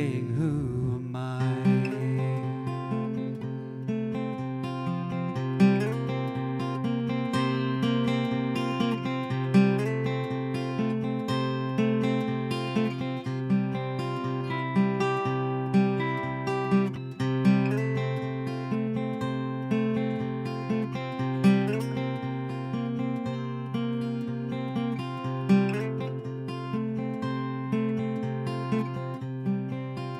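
Solo acoustic guitar played instrumentally: picked melody notes over a sustained low bass note, with a stronger accented note about every four seconds.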